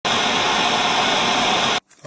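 Television static: a steady, loud hiss of white noise that starts abruptly and cuts off suddenly just before the end.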